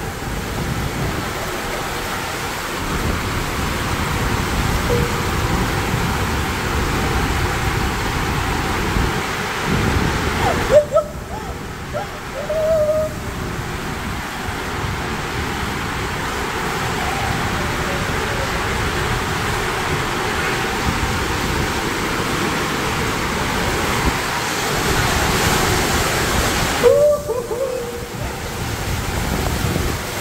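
Water rushing through an enclosed water-slide tube as a rider slides down, a steady rush of water and sliding noise. A few short vocal exclamations cut through it around the middle and again near the end.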